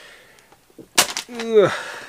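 A single sharp snap about a second in, followed at once by a man's short vocal sound falling in pitch.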